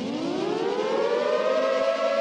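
Siren-like tone in an intro sting, rising steeply in pitch through about the first second and a half, then holding steady.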